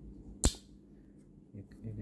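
A single sharp click about half a second in, as an AA battery is knocked while being handled beside a small plastic sensor; a man's voice starts near the end.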